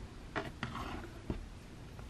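Faint handling noises of small plastic vials and a paintbrush on a tabletop: a few soft rustles and knocks, with a low thump just past the middle.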